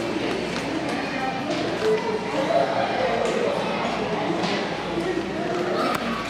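Indistinct voices and chatter in a large store hall, with scattered clicks and knocks from footsteps and a rolling wire shopping cart.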